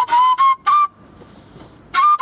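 A small, cheap end-blown whistle-flute played in a quick run of short, separate high notes. There is a rest of about a second, and then the next phrase starts near the end.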